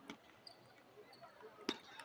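Table tennis rally: a few sharp, light clicks of the celluloid ball striking paddle and table, the loudest about three quarters of the way through.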